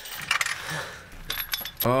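Chain-link fence rattling and jangling as it is grabbed and shaken: a few light clinks, then a denser rattle in the second half.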